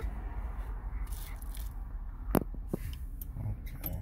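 Low, steady rumble of a car cabin on the move, with a couple of sharp clicks a little past the middle.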